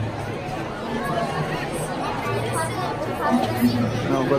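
Background chatter of people talking, over a low steady hum.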